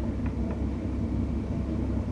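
Steady low rumble of background noise, with a few faint strokes of a marker pen on a whiteboard near the start.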